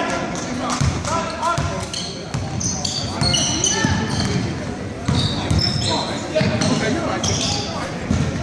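A basketball being dribbled on a hardwood gym floor, bouncing about twice a second, with sneakers squeaking in short high chirps. Spectators call out and chatter, and the big gym echoes.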